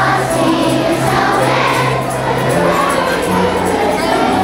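A group singing along to accompanied music, with held bass notes under many voices.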